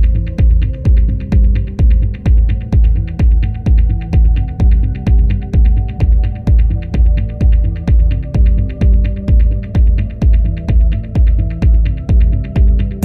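Dub techno track: a heavy kick drum pulses steadily about twice a second under sustained low chord tones, with light high ticks between the beats.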